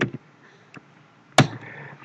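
A single sharp keyboard keystroke click about one and a half seconds in, with a fainter tap a little before the middle, in an otherwise quiet room.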